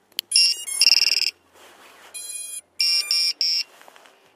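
Electronic startup beeps from a small FPV quadcopter just powered up by plugging in its battery. There are two longer tones in the first second and a half, a quieter tone a little after two seconds, then three quick beeps in a row.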